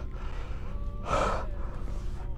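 A man's single heavy, breathy gasp about a second in, one of a series of distressed breaths taken at intervals of about a second and a half.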